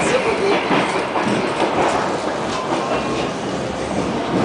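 DR1A diesel multiple unit running, heard from inside the carriage: the steady rumble of the moving train with occasional clicks of the wheels on the rails.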